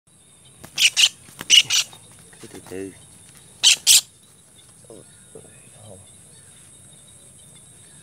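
A white-throated kingfisher caught in a ground snare gives loud, harsh distress calls in three quick pairs, the last pair a little before halfway. A steady high insect drone runs underneath.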